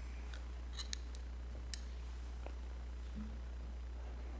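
A few faint, short clicks and handling noises, bunched in the first two seconds, as the reader moves at the wooden lectern and takes off his glasses, over a steady low hum.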